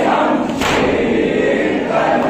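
A crowd of men chanting a noha together in unison during matam. About half a second in there is one sharp, loud group chest-beat stroke, part of a beat that comes about every second and a half.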